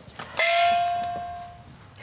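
A single struck bell ringing out, a comic sound effect: it strikes sharply about half a second in and fades away over about a second and a half. A short swish follows at the very end.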